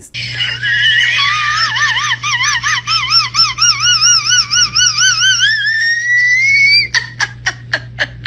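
A woman's very high-pitched squeal in whistle register, like a whistling kettle. It wavers up and down a few times a second, then climbs steadily in pitch and breaks off after about seven seconds into a quick string of short laughing sounds. A low steady hum runs underneath.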